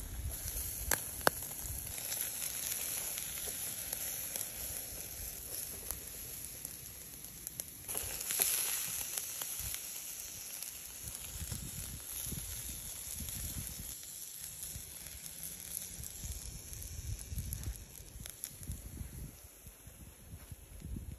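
Sausages and a slab of meat sizzling on a wire grill over glowing charcoal: a steady fizzing hiss with a few sharp crackles about a second in.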